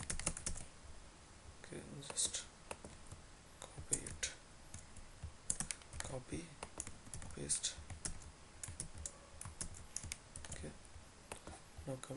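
Computer keyboard keys clicking in short, irregular clusters of keystrokes as lines of code are typed and pasted.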